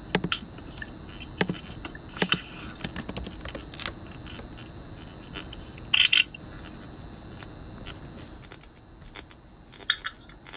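Handling noises from a phone and laptop being moved and touched: scattered small clicks and light scrapes, with a short louder rustle about six seconds in and another click near the end.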